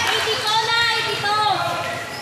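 A high-pitched voice calling out briefly, in a short run of bending calls about halfway through, over the general noise of a basketball game.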